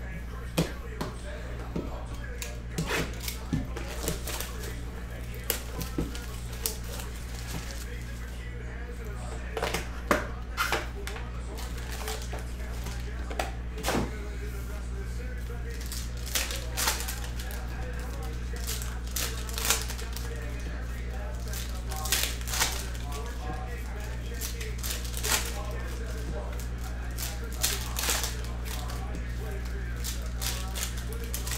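Trading cards being handled and foil card packs crinkled and torn open: irregular sharp clicks and crackles over a steady low electrical hum.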